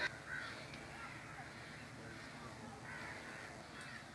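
Faint bird calls in the trees: a few short calls spaced a second or more apart.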